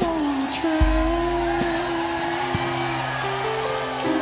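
Live rock band playing an instrumental passage: a sustained lead line that bends in pitch over bass guitar and drum kit, with a kick-drum hit about a second in and steady cymbal ticks.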